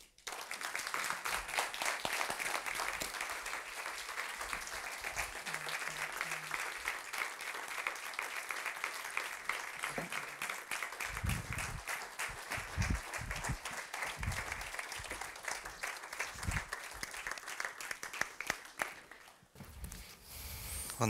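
Audience applauding at the end of a talk, a dense steady clapping that dies away about a second before the end. A few low thumps sound through the clapping in its second half.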